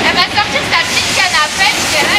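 Loud, steady rushing noise of a large fish auction hall, with many overlapping voices and short squeaks over it.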